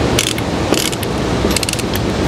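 Lever chain hoist (chain block) being ratcheted tight by hand: bursts of rapid ratchet-pawl clicks as the lever is worked back and forth, with short pauses between strokes.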